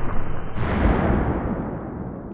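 Explosion boom about half a second in, decaying into a long rumble that grows duller as it fades.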